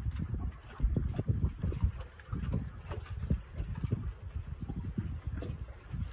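Wind buffeting the phone's microphone in irregular gusts, a low rumble that swells and drops from moment to moment.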